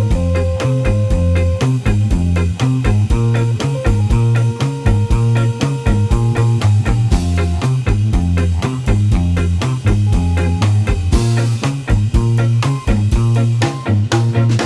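A small reggae band playing an instrumental tune: hollow-body electric guitar over a pulsing bass line and steady drums.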